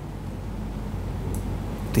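Background room tone during a pause in speech: a steady low hum with a faint hiss.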